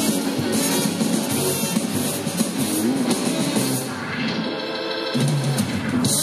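Live blues band playing an instrumental passage: drums, electric guitar and a horn section of baritone sax, saxophone and trumpet. The band thins out for about a second near four seconds in, then comes back in full.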